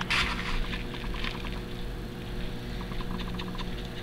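Gloved hands patting and pressing dry coconut fiber onto wet silicone: faint scattered soft taps and rustling over a steady low electrical hum.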